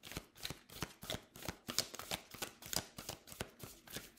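A deck of oracle cards being shuffled by hand: a quick, irregular run of soft card clicks and slaps.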